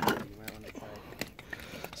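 Pieces of shale clicking and knocking together as they are handled, a few sharp clicks, with a faint voice in the background.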